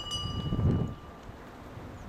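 The show-jumping start bell, an electronic chime, ringing out and fading away about a second in, over a low rumble of wind on the microphone that peaks near the middle.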